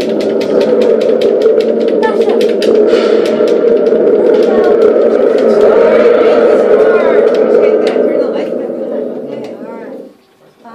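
A loud, sustained din from a group of children's voices, mixed with many short sharp taps or clicks, fading out over the last couple of seconds.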